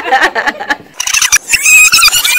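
Tape-rewind sound effect: audio played backwards at high speed, heard as a high-pitched squeaky chatter in the second half, after a few short clicks and voice fragments.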